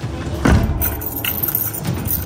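A bunch of keys on a keyring jangling as a key is worked in a door lock, with a louder click about half a second in.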